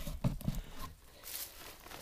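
Rustling and crinkling of a nylon poncho being handled over dry leaf litter, a few short scuffs in the first half second, then fainter rustling.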